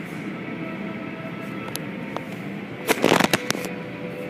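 Automatic car wash tunnel running steadily, with hanging soft-cloth strips dragging over an SUV. About three seconds in there is a brief, loud flurry of rapid clattering.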